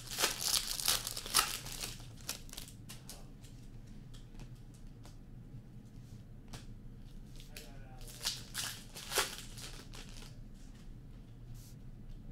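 Hockey card pack wrappers being torn open and crinkled by hand, in two spells of rustling at the start and again near the end, with light clicks of cards being handled in between.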